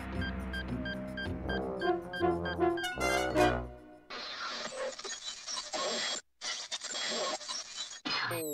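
Cartoon music score with brass and quick notes for the first half, climbing to a peak. About four seconds in it gives way to a harsh electronic static hiss from the robot's failing vision, which drops out for a moment partway through.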